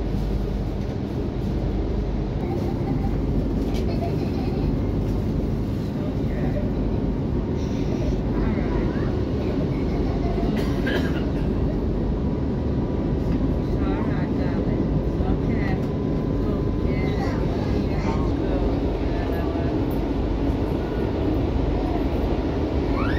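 Steady running noise of a passenger train in motion, heard from inside the carriage: a continuous low rumble of wheels on rails with no let-up.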